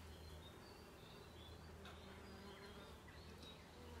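Faint, steady buzzing of bees and bumblebees flying around flowering wild roses.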